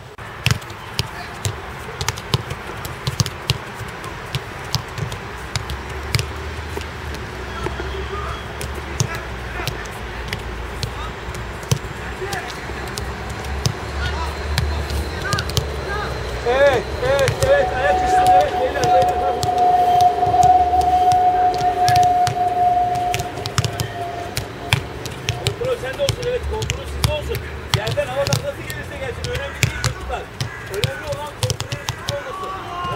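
Footballs being kicked and caught, with repeated sharp thuds at irregular intervals throughout. About halfway through, a voice rises into ornamented, wavering singing and then holds one long note for several seconds.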